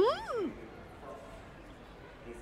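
A brief questioning vocal "hm?" whose pitch rises and then falls, in the first half-second, followed by quiet room tone.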